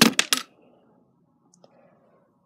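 A quick clatter of three or four sharp clinks in the first half second: small hard objects knocking against each other on a cluttered dresser top.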